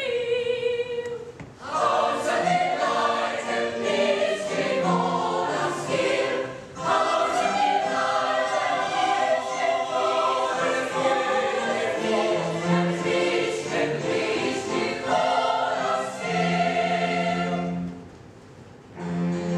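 Baroque opera chorus singing with a small string orchestra, in phrases broken by short pauses.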